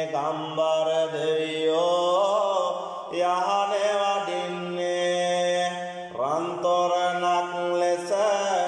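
A solo male voice chants Sinhala devotional verses (yahan kavi) in long, wavering, ornamented phrases. Fresh phrases start about three and six seconds in.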